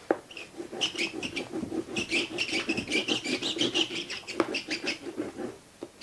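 Oil pastel scrubbed rapidly back and forth on paper: a dense run of quick, scratchy strokes that starts just after the beginning and stops about five and a half seconds in.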